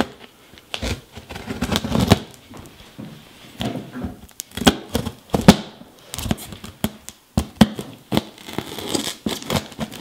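Large knife cutting through clear plastic wrap and tape on a cardboard box: irregular crackling and tearing of the plastic film, broken by sharp snaps, the loudest about five and a half seconds in.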